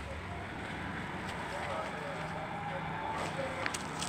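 Arena background sound: faint, distant voices over a steady low hum, with a few light clicks near the end.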